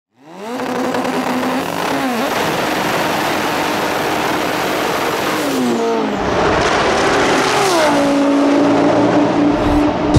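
A high-performance car engine accelerating hard at high revs, its pitch dropping sharply at gear changes about 2, 6 and 7.5 seconds in.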